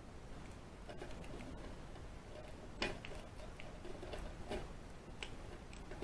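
Faint metallic clicks and scrapes of a rake pick being worked in a padlock's keyway against a tension wrench, the sharpest click about three seconds in.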